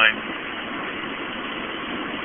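Steady drone of a Honda car cruising on the highway at light throttle, engine and road noise heard from inside the cabin.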